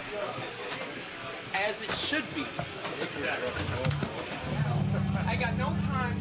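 Talking and crowd chatter between songs in a small bar room. A little past halfway, a low, steady droning note from an amplified instrument comes in and holds.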